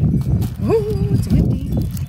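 Close, choppy low knocking and rumbling from paper and items being handled near the microphone, with a woman's brief wordless hum about a second in.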